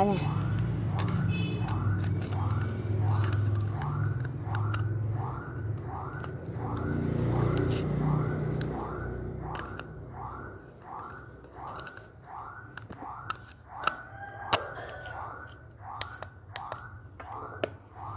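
Small clicks and knocks of the plastic casing and parts of a mini nano mist sprayer being handled and fitted back together. Behind them a rising-and-falling chirp repeats about twice a second, and a low hum fades out about halfway through.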